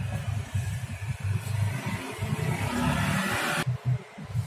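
Hand tool scraping the rubber inner liner of a tubeless car tyre at the patch site, a rough scratching that grows louder and cuts off abruptly near the end. An irregular low rumble runs underneath.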